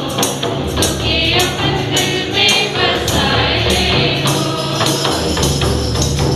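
A mixed group of men and women singing a gospel song together, accompanied by hand-played barrel drums beating a steady rhythm.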